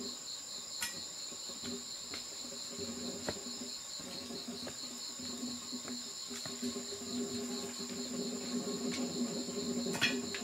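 Forest insects trilling continuously: one steady high-pitched trill and a second, rapidly pulsing one, with a lower drone that comes and goes. Scattered faint rustles and snaps of someone moving through dry leaf litter.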